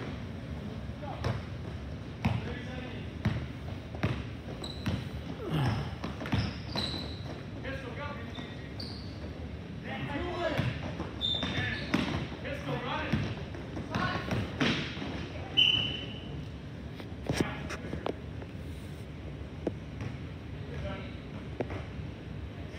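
A basketball being dribbled on a hardwood gym floor during a game, with scattered short high squeaks and the echo of a large gym.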